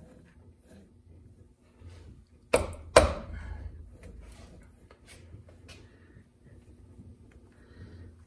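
Nylon gear being worked onto the power feed shaft against its metal housing: light handling clicks and scrapes, with two sharp knocks about half a second apart a little under three seconds in.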